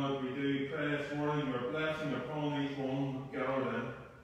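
Speech only: a man praying aloud in slow, drawn-out phrases.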